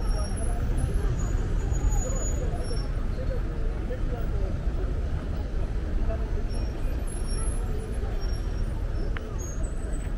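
Busy city street ambience: steady traffic noise from passing cars, with the voices of many people talking nearby.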